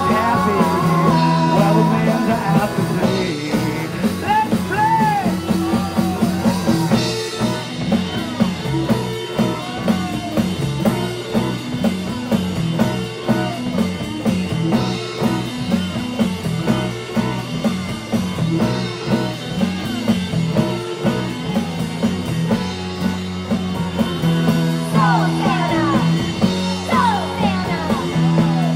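Live rock band playing an instrumental stretch of the song: electric guitar, bass and drum kit over a steady, driving beat, with sliding guitar lines near the end.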